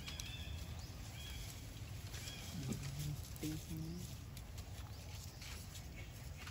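Macaques' soft calls: a few short high squeaks early on and two brief low grunt-like notes about halfway through, over a steady low outdoor background.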